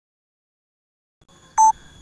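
Dead silence, then faint background noise and a single short electronic beep about a second and a half in, from the smartphone's camera app.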